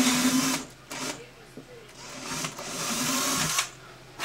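Cordless drill with an 11/64-inch bit boring bridge pin holes through an acoustic guitar's top: the motor runs steadily and stops about half a second in, then runs again more quietly for about a second and a half near the end.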